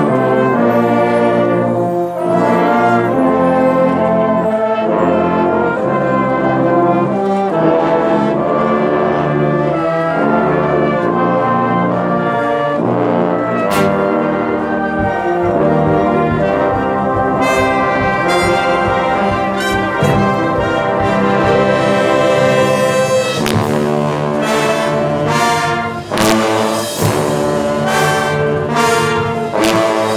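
Marching band brass section of trombones, trumpets, horns and tubas playing sustained chords. From about halfway through, sharp percussion strokes join in and grow denser near the end.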